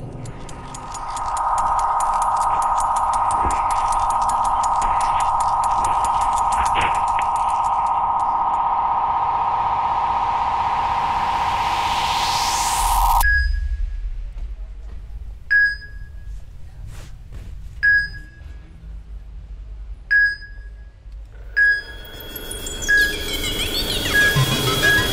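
Electronic sound-design tones: a steady high ringing for about the first half, with a rising sweep building under it before it cuts off suddenly. Then a single short electronic beep about every two seconds, in the manner of a heart monitor, quickening near the end.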